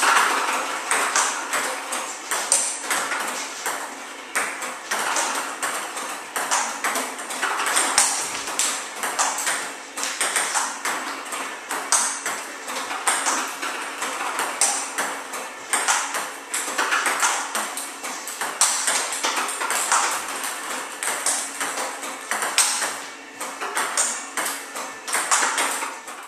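Table tennis rally against a ball-throwing robot: a quick, uneven run of sharp clicks as celluloid balls hit the paddle and bounce on the table. The robot feeds about 45 balls a minute, placed at random, with medium topspin.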